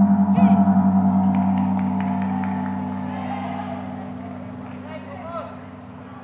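A gong struck once, its low ring wavering and slowly dying away over several seconds: the signal that ends a round of a pencak silat bout.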